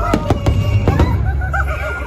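Aerial fireworks bursting: a quick run of sharp bangs in the first second or so over a deep rumble, with the show's music playing underneath.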